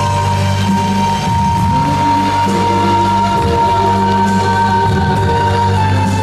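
Amplified instrumental backing music for a song, with little or no singing: one high note held for about five seconds over a steady bass line.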